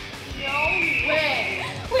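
Women talking briefly over background music, with a high held tone starting about half a second in and lasting just over a second.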